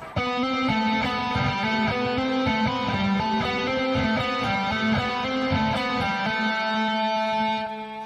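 Electric guitar playing a quick legato lick: a run of single notes, not every one picked, with some sounded by fretting-hand hammer-ons across the string changes. It ends on a held note that rings and fades out near the end.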